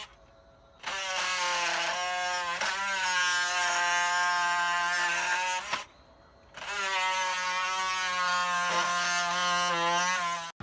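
Cordless jigsaw cutting into the end of a rotted wooden rafter tail, its motor running with a steady whine. It runs twice, about five seconds from about a second in and then about four seconds, with a brief stop around six seconds in.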